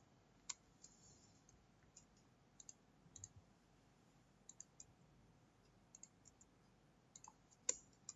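Faint, scattered clicks of a computer mouse and keyboard as code is edited, a few at a time with pauses between; the sharpest click comes near the end.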